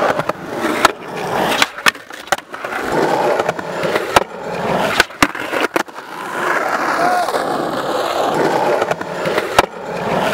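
Skateboard wheels rolling on a concrete skatepark surface, the rolling noise swelling and fading as the skater pushes and rides, broken by sharp clacks of the board striking the concrete, several of them in quick succession midway.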